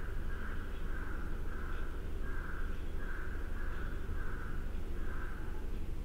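A bird calling over and over, a string of short harsh calls about two a second that stops shortly before the end, over a steady low hum.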